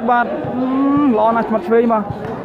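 A man's voice calling out loudly in long, drawn-out vowels, one held for most of a second.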